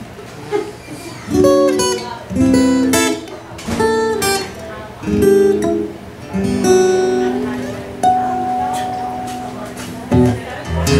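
Solo acoustic guitar intro: after a quiet first second, a run of strummed and picked chords, then a last chord left ringing and slowly fading through the second half.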